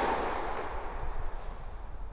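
Echo of a tennis serve dying away in a large indoor tennis hall, then a faint racket strike on the ball from the far end of the court a little over a second in.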